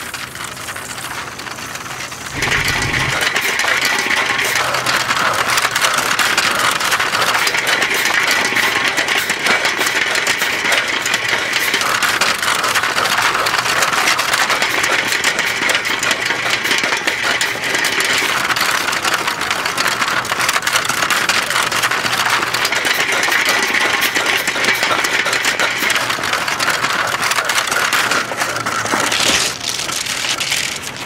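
A film reel rolling fast over stony, uneven ground, making a loud continuous rattling clatter. It starts with a bump about two and a half seconds in and drops away near the end.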